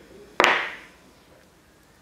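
A single sharp knock of a hard object about half a second in, fading out over about half a second.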